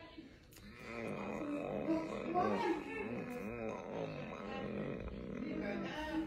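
A man's voice, low and indistinct, rising and falling in pitch without clear words, starting about a second in.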